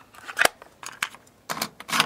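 A few sharp plastic clicks as a cassette is handled and set into the open cassette door of a Philips FC931 cassette deck, the loudest about half a second in and a cluster more between one and two seconds in.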